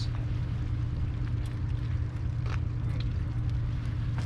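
Steady low mechanical hum, like an idling motor, with a few faint clicks.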